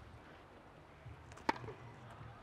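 A single sharp pop of a tennis racket striking the ball on a serve, about one and a half seconds in.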